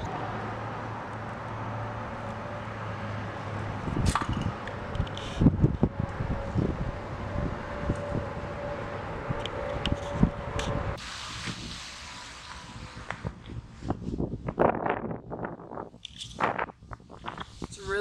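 Wind buffeting the camera microphone in gusts, with scattered knocks and rustles of handling and movement.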